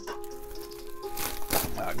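Soft background music with long held notes. About a second in comes a brief crinkling rustle of a plastic padded mailer being slit open with a utility knife.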